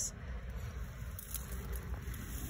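Wind rumbling unevenly on the phone's microphone, over a faint steady outdoor background.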